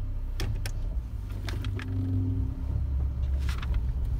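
1988 Dodge Raider running on the move, heard from inside the cab as a steady low engine and road rumble, with a few light clicks and knocks from the interior.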